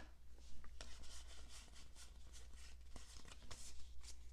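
Pokémon trading cards sliding and rubbing against each other in the hands as a freshly opened pack is sorted through: a faint run of soft scrapes, about three a second.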